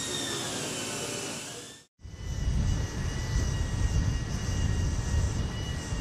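Steady high-pitched jet turbine whine over a hiss. The sound cuts out briefly about two seconds in, then returns with a heavier low rumble beneath the whine.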